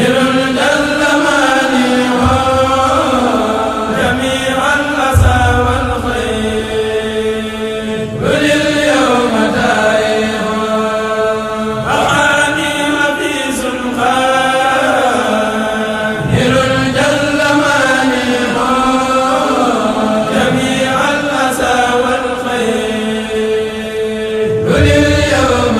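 A Mouride kurel, a group of men, chanting a khassaid in Arabic without instruments, amplified through microphones, in long held phrases that break and restart about every four seconds.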